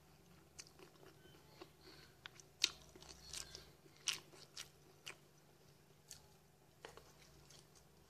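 Close-miked chewing of crunchy cereal with granola clusters, mouth closed: irregular crisp crunches, the loudest a little under three seconds in and again at about four seconds.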